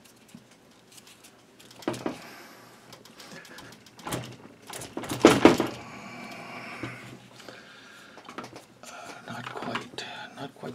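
Rustling and scraping of paracord being pulled through its wrap on the metal arm of an AK underfolder stock, with scattered small clicks and a louder burst of noise about five seconds in.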